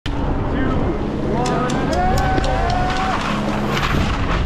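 Wind noise on a skier's action-camera microphone at the top of a steep slope. Voices call out in long, gliding shouts over it, with a few sharp clicks in the middle.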